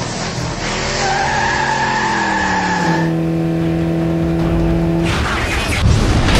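Car sound effect of tyres squealing in a skid: a high steady screech for about two seconds, then a lower steady tone that stops about five seconds in.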